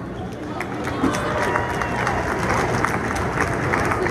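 Arena crowd chatter with the quick footfalls of a group of dancers in sneakers jogging across a hardwood basketball court, heard as many short, sharp ticks.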